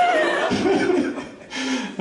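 A single person laughing: a high laugh that glides sharply up and back down at the start, followed by a few shorter, lower laughing sounds.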